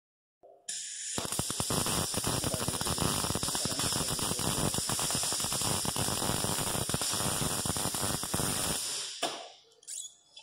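Wire-feed (MIG) welder arc crackling steadily as a bead is laid on steel tube, starting about a second in and cutting off abruptly near nine seconds.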